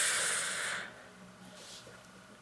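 A man's breathy hiss through clenched teeth, lasting under a second, then fading to quiet.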